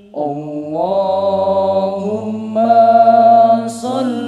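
Male voices singing an Islamic sholawat a cappella in harmony: long held notes over a low sustained bass voice, with no drums. The voices come in just after the start, climb in pitch about a second in, and step up louder about two and a half seconds in.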